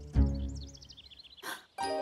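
Cartoon background score: a low note, then a quick descending run of high, bell-like twinkling notes lasting about a second.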